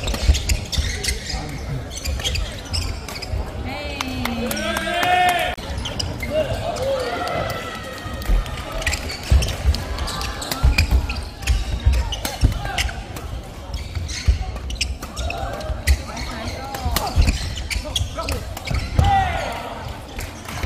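Men's doubles badminton rally in a sports hall: sharp racket strikes on the shuttlecock throughout, with shoes squeaking and feet thudding on the wooden court.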